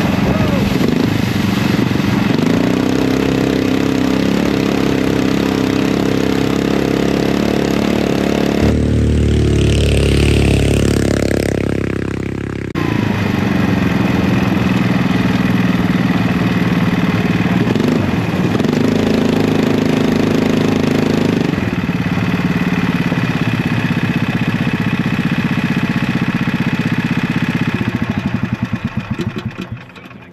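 Crosskart's Predator 459 single-cylinder engine running hard under load through a lap, its revs rising and falling. Around a third of the way in it turns deeper and duller for a few seconds, and near the end it slows to idle and dies away.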